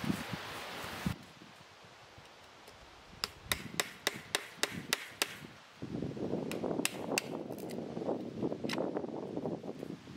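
Wire-mesh garden fence being worked loose from a wooden post: a quick run of about ten sharp knocks over two seconds, then the wire mesh rattling and scraping against the post, with a few more clicks.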